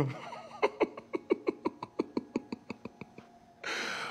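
A man laughing in a rapid run of short, breathy bursts, about six a second, slowing off, followed by a hissing breath near the end.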